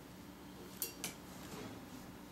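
Hands working paracord into a snake knot: two sharp clicks, the first with a slight metallic clink, about a second in, over a steady low hum.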